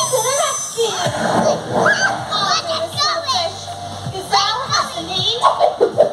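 Children's excited high-pitched shouts and squeals, many voices overlapping, over background music.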